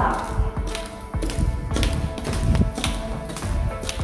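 Background music, with footsteps tapping on a hard polished floor about twice a second.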